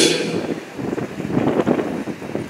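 A pause in an amplified outdoor speech: the last word trails off through the loudspeakers, then wind buffets the microphone over a steady outdoor background rumble.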